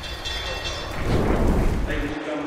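Transition sound effect for an animated logo: a deep, noisy rush like a fiery blast, swelling about a second in and dropping away near the end.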